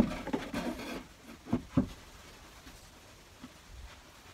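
Plywood cabinet box knocking and rubbing as it is lifted and pushed up into place against the ceiling and wall: a knock at the start with some scraping, then two short knocks about a second and a half in.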